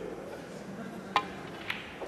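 A snooker shot: the cue tip strikes the cue ball with a sharp click about a second in, and about half a second later comes a second, softer click of the ball striking another ball, over a low arena murmur.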